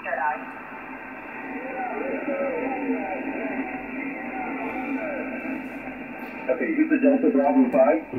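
Single-sideband voice signals on the 10 m band from an Icom IC-7800 HF transceiver's speaker, narrow and cut off above about 3 kHz over steady band hiss. A tone sweeps quickly downward at the start as the dial is tuned onto a station. A distant operator's voice follows, faint at first and stronger near the end.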